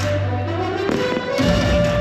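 Show music playing with fireworks going off, one sharp bang about a second in.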